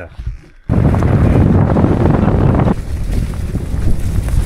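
Wind rushing over the helmet camera's microphone on a mountain bike riding down a forest trail, with the rolling and clattering of the bike over the ground. It cuts in suddenly under a second in, is loudest for about two seconds, then drops to a lower steady rush.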